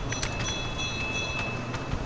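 Steady low background noise with a faint high steady whine, and a few faint computer-keyboard keystrokes as a line of code is typed.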